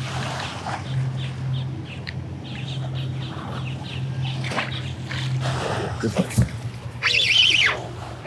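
A bird calling with harsh squawks near the end, over a steady low hum that fades out about six seconds in.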